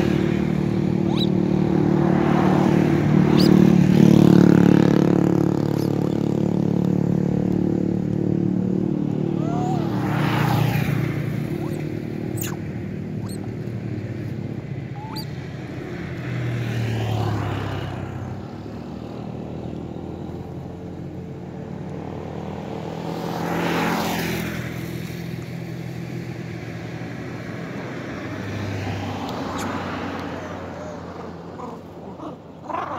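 Motor vehicles passing one after another, their engine drone swelling and fading with each pass, roughly every six or seven seconds; the loudest pass comes a few seconds in.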